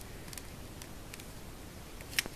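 A few faint clicks as a Samsung slider phone is handled and slid shut, over quiet room hiss.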